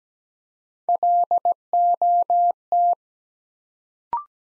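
Morse code at 17 wpm, a single steady tone keyed on and off, sending the word LOT once: dit-dah-dit-dit, dah-dah-dah, dah. It starts about a second in and stops near the three-second mark.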